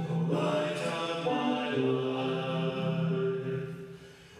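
A slow hymn sung in long held notes that step from one pitch to the next, with a short pause between phrases near the end.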